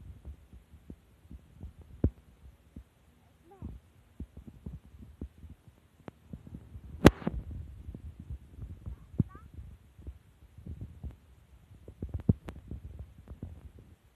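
Low rumbling handling noise of a handheld phone being moved about, with scattered light knocks and one sharp click about seven seconds in.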